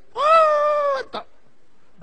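A single drawn-out, high-pitched cry lasting about a second, rising a little and then falling away, followed by a brief short sound.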